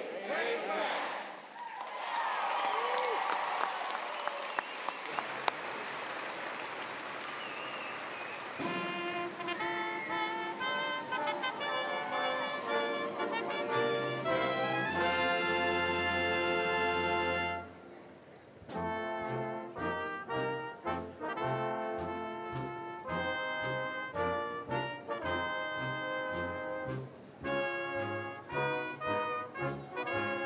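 Crowd cheering and applauding, then about nine seconds in a concert band's brass starts playing. It holds a chord that breaks off around the middle, then after a short gap goes into a brisk passage of short, rhythmic notes.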